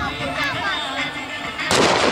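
A single loud bang about three-quarters of the way through, with a short echoing tail, over crowd voices and music.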